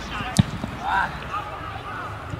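A single sharp thud of a football being struck, about half a second in, followed by a short distant shout.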